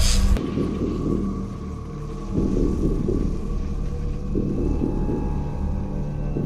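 A loud electrical crackling sound effect of lightning arcs cuts off suddenly about half a second in. A low, ominous rumbling drone follows, swelling roughly every two seconds over steady low tones.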